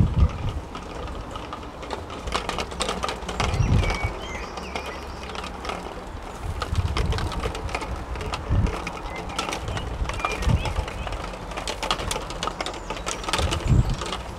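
Outdoor ambience with birds calling over a steady rustling background, broken by low thumps every couple of seconds.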